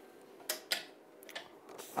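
A few light clicks and ticks from sheets of transfer film and paper being handled, with two sharper clicks about half a second apart near the middle.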